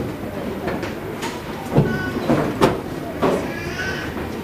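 A man's voice over a PA system in a reverberant hall, over a steady background hiss, with a couple of sharp knocks about two and two and a half seconds in.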